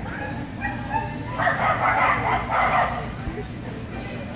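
A dog barking in a quick run of yips and barks, loudest in a burst of about a second and a half in the middle.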